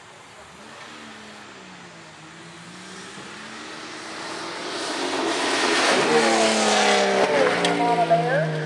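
An SUV's engine revving hard as it runs through a mud bog pit, growing steadily louder to a peak about three-quarters of the way in, where a rush of tyre and mud noise joins it. The engine's pitch drops near the end.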